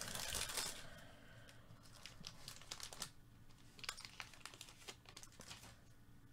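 A trading-card pack's wrapper being torn open and crinkling in the first second, then faint crinkles and light clicks as the cards are handled out of it.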